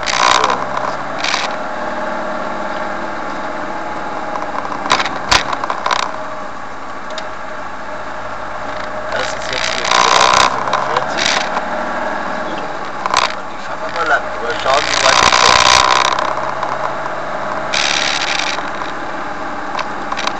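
Engine and road drone heard from inside a moving vehicle, with several short, louder rushes of noise over the top.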